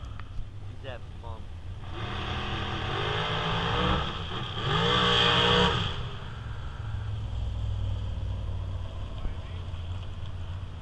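Drag car engine accelerating hard down the strip, its pitch rising and dipping through the gears. It is loudest around four to six seconds in, then drops back to a low rumble as the car runs away down the track.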